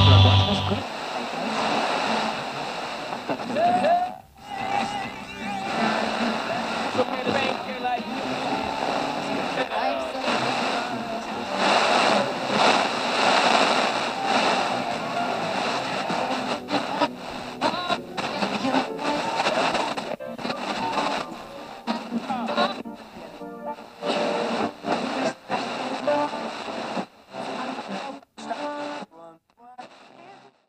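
Music that stops about a second in, followed by people talking in bursts that grow sparser toward the end.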